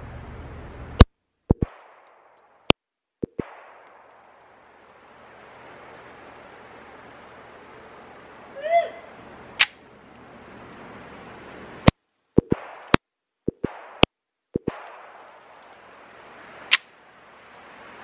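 Seven single shots from a 1913–1918 Colt 1911 .45 pistol at uneven spacing: two in the first three seconds, then five from about ten seconds on. Several shots are followed by a fainter knock or two.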